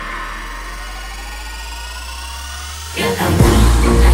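Music: a break in a pop song remix where a held low bass note sits under several rising whining tones, like a riser sweep. The full beat comes back in about three seconds in.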